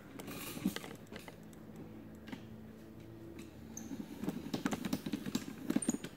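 Light, irregular clicks and small rattles, getting denser and louder in the last two seconds.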